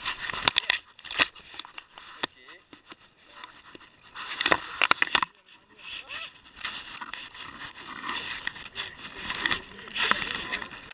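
Camera microphone handling noise: crackling and rubbing as the camera is jostled against fabric, with several sharp knocks, the strongest about a second in and around the middle. Voices are heard behind it.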